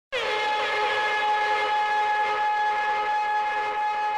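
A single held electronic note with strong overtones, starting abruptly and holding steady at one pitch: a sustained tone opening the intro music.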